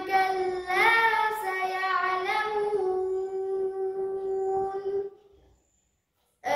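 A boy chanting a Quranic recitation (qirat), drawing out long, held melodic notes in a single phrase. The phrase ends about five seconds in, followed by a silent pause for breath.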